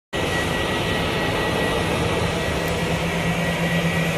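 Jet engines of a taxiing Boeing 737 airliner running at low taxi power: a steady rush with a constant high whine and a low hum.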